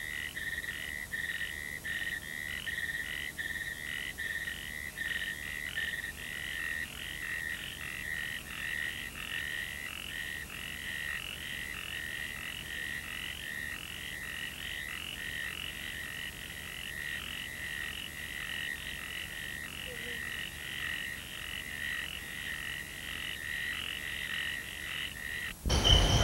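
Night chorus of insects and frogs: a steady high trill with a chirping pulse about three times a second. A sudden loud sound breaks in at the very end.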